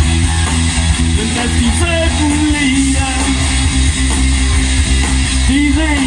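Live rock band playing a loud instrumental passage, electric guitars over bass guitar and drums, with bending guitar notes.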